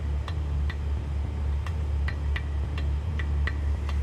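Suspense score: a low pulsing drone with sharp, clock-like ticks about two to three times a second.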